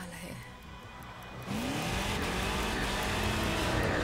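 A car engine revving up hard, cutting in suddenly about a second and a half in and climbing in pitch, then running loud and getting louder toward the end.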